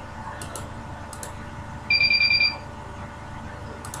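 A few sharp mouse clicks on the keypad, and about two seconds in a loud, high electronic beep pulsing rapidly for about half a second, over a steady background hum.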